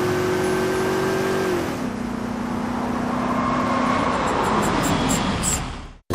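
A motor vehicle driving in, with engine and tyre noise. Its engine note drops in pitch about two seconds in, and the sound fades out quickly near the end.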